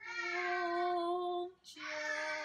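A woman's voice chanting a devotional mantra: one long held note, then after a brief break a second held note a little lower.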